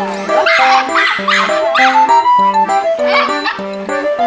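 Norfolk terrier barking about four times in short yaps, the first three close together and the last about three seconds in, over a light background music melody.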